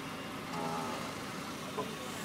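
Steady low vehicle hum with no change in pitch. A faint voice is heard briefly about half a second in.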